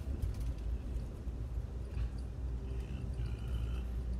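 Passenger train running along the track, heard from inside the car: a steady low rumble with a few sharp clicks and knocks from the wheels on the rails.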